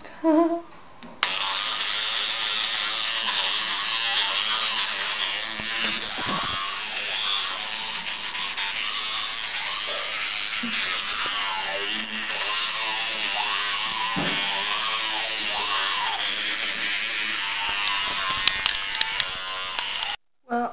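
Electric toothbrush switched on about a second in and buzzing steadily while brushing teeth, its tone shifting as the head moves around the mouth.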